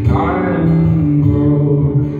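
Live acoustic guitar with a male voice holding one long sung note over it.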